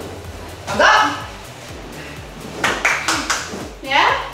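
Background music with a brief vocal exclamation about a second in, then a short run of hand claps around the three-second mark.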